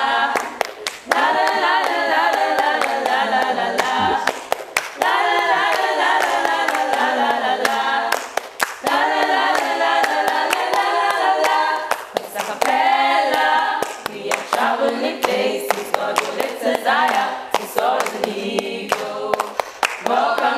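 Background music: a choir singing a cappella, with sharp claps running through it.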